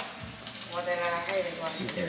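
Food sizzling and crackling in a frying pan, with a person's voice heard briefly in the middle.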